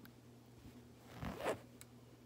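Rubber loom bands rasping as they are dragged up over a plastic hook and loom pegs: two short zip-like strokes about a second in, over a faint steady hum.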